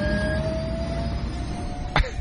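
Recorded Airwolf helicopter sound effect: a steady low engine rumble with a thin whine that climbs slowly in pitch, like a turbine spooling up.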